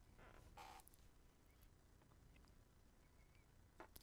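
Near silence: room tone, with a faint brief sound in the first second.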